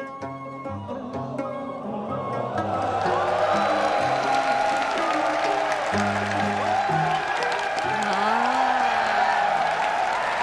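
Background music with a steady run of instrument notes, joined about two and a half seconds in by a large audience of soldiers cheering and shouting, which stays loud over the music.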